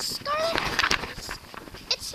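A young child's high-pitched wordless vocalizing: a short call that rises and then falls in pitch, with rustling noise around it.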